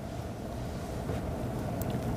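Steady background noise: a low rumble with an even hiss over it, and a faint tick near the end.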